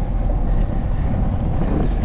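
Wind buffeting the microphone of a bike-mounted camera while riding: a loud, steady low rumble that wavers in strength.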